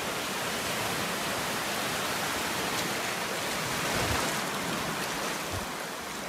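Small waves breaking and washing in over shallow sandy water at the shoreline, a steady hiss of surf.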